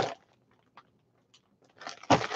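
Near silence broken by a few faint clicks and, near the end, a brief crinkling rustle as a small wrapped item is handled.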